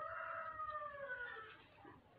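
A rooster crowing: one long call that holds its pitch, then falls and fades out.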